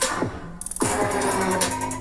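Electronic dance-track music with a heavy beat, with two deep falling synth swoops in the first second.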